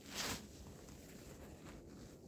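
A single brief scraping rustle just after the start, over a faint low rumble.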